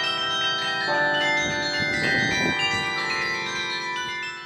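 Carillon bells playing a melody, struck notes ringing on and overlapping one another.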